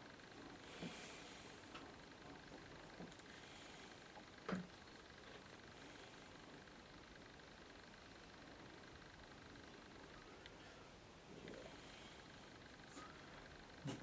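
Near silence: room tone with faint scratchy strokes of a fine watercolour brush on paper, and a small knock about four and a half seconds in.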